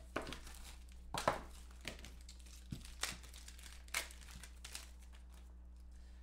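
Plastic packaging crinkling and rustling in a string of short bursts as a graded trading card in a clear plastic slab is unwrapped by hand. Low electrical hum underneath.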